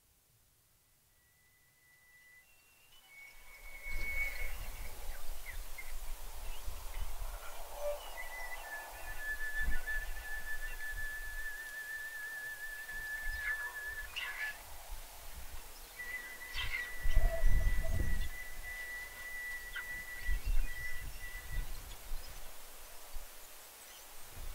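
Long, high held tones from a wind instrument played in the open air: a wavering note lasting several seconds, then after a short gap a steady note of about five seconds. Low rumbling gusts of wind on the microphone run under the notes and are loudest just after the second note begins.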